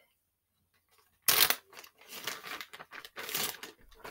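Scratchy rubbing and crinkling close to the microphone as makeup is wiped off, in three bursts starting about a second in, the first the loudest.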